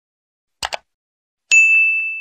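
Sound effects for a subscribe-button animation: a quick double mouse click, then a single bright bell ding about a second and a half in that rings on one pitch and fades away.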